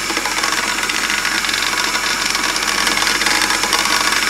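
Old electric hand sander running, shaking a stainless steel pan and its metal lid so they rattle with a fast, even buzz.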